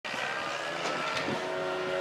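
A steady mechanical hum with several held tones, like a running motor, and a couple of faint ticks about a second in.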